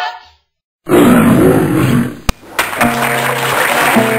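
The tail of a sung phrase, a short gap, then a loud noisy passage with voices and a sharp click. An acoustic guitar starts playing held notes about two and a half seconds in.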